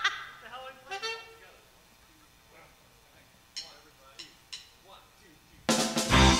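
A laugh trails off into a quiet pause broken by a few short clicks, then a live band with drum kit comes in loudly near the end.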